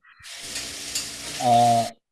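Hissing, crackling line noise from an open microphone on a video call. It switches on and off abruptly, as if gated, and a short voice-like sound rises over it near the end.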